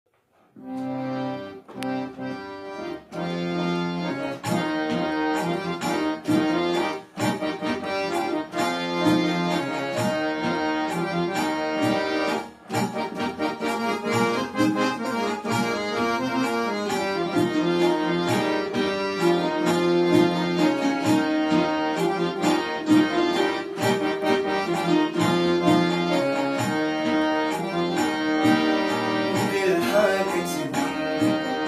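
Harmonium playing the instrumental introduction to a Kashmiri song, its reedy notes and held chords carrying the melody, starting about half a second in. Percussion strokes run along with it.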